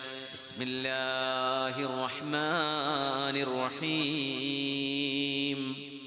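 A man's voice chanting melodically in long held notes with ornamented, wavering turns, in the style of Quranic recitation. The voice fades away near the end.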